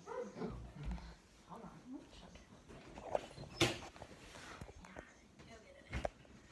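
A dog making a few short, quiet vocal sounds, with faint voices in the background. There is a sharp click about three and a half seconds in.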